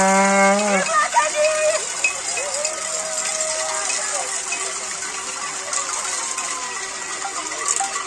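A hand-held horn noisemaker blares one steady, buzzy note for about a second at the start. After it come scattered shorter toots and shouts from the marching crowd over a steady high hiss.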